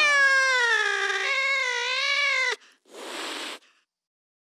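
A cat's long, drawn-out meow that wavers and falls in pitch, breaking off after about two and a half seconds, followed by a short burst of hissing noise.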